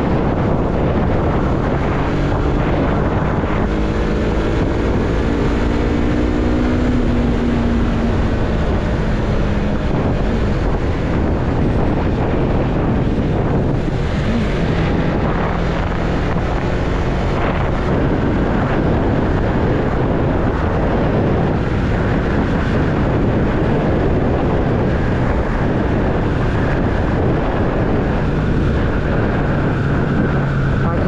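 Yamaha MT-03 motorcycle engine running at cruising speed, about 75 km/h, under heavy wind rush on the microphone. The engine note climbs between about four and ten seconds in.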